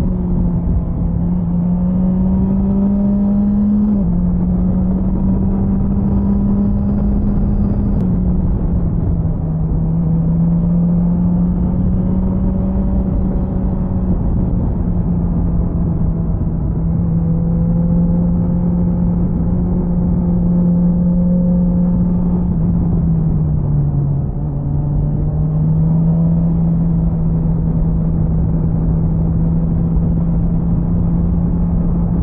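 BMW S1000XR's inline-four engine running at steady cruising revs under way, with wind and road noise over the microphone. Its pitch steps down twice in the first eight seconds, as with upshifts, and dips briefly then rises again about 24 seconds in.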